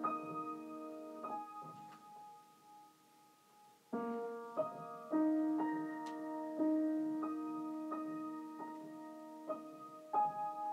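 Solo piano improvisation: slow chords and single notes left to ring. The playing dies away to a pause about two seconds in and picks up again about four seconds in.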